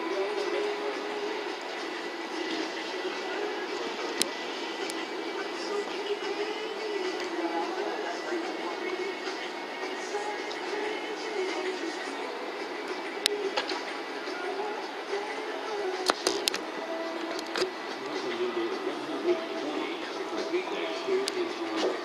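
Indistinct background voices and music over a steady ambient wash, with a few scattered sharp clicks.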